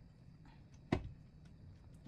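A metal grain mill attachment seats into the attachment hub of a KitchenAid stand mixer with one sharp click about halfway through. Apart from that, only faint handling noise is heard.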